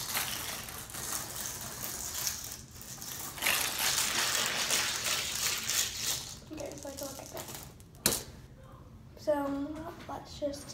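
Plastic water bottle filled with water, soap and beads being shaken hard for about six seconds, the beads rattling and the water sloshing inside. A single sharp knock follows about eight seconds in.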